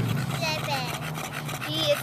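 Dogs panting rapidly. The loudest is a young white bulldog with its mouth wide open, described as "that loud".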